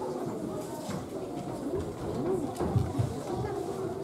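Young children's voices in a reverberant hall, drawn-out rising-and-falling calls rather than clear speech, with a few low thumps about three seconds in.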